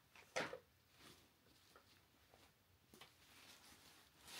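Near silence with faint handling noise from a fabric dust bag being opened: one short rustle about half a second in, then only soft scattered rustles.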